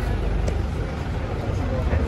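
Indistinct conversation between people close by, over a steady low rumble, with one brief click about half a second in.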